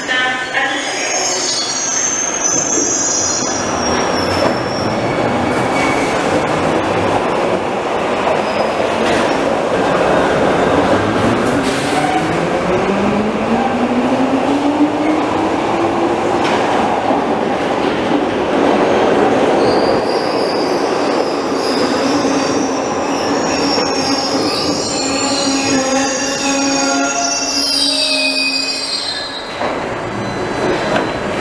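Glasgow Subway trains in an underground station. A train's motor whine rises in pitch as it gathers speed along the platform, over a continuous rumble of wheels. High wheel squeal comes near the start and again through the second half, as a train runs in and stops.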